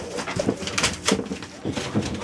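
Puppies tussling in play, with short soft grunting vocal sounds and scuffling and rustling of newspaper underfoot.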